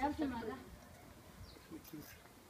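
A woman's voice speaking a few words in the first half second, then only faint background noise.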